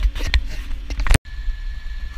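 Tractor running, heard inside the cab, with a few sharp knocks and clicks, cut off suddenly about a second in. After the cut, a lower rumble with wind noise and a faint steady high tone.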